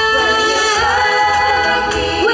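A girls' vocal group singing a sustained harmony through microphones, the voices moving together to new held notes just under a second in.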